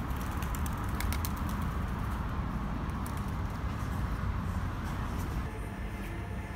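Outdoor street background: a steady low rumble of noise with a few short high ticks about a second in.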